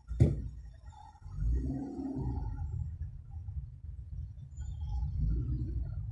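Low, steady rumble of a car's engine and road noise heard inside the cabin while creeping along in slow traffic. A sharp knock just after the start is the loudest sound, and a brief muffled sound comes about two seconds in.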